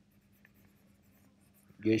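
Faint stylus strokes on an iPad's glass screen over a low steady hum, very quiet, before a voice comes back near the end.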